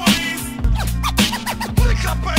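Hip hop music: a steady beat with kick drums under turntable scratching, short scratched record sounds sliding up and down in pitch.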